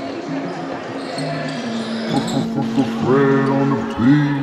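Live sound of a basketball game in a gym: a ball bouncing on the hardwood and players' voices, with music playing under it.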